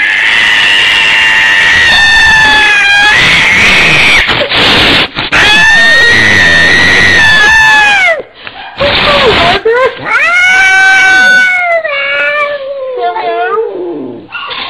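A domestic cat yowling (caterwauling) in a series of about five long, drawn-out calls, the last one sliding down in pitch near the end. It is the defensive yowl of an agitated cat, crouched with its ears flattened.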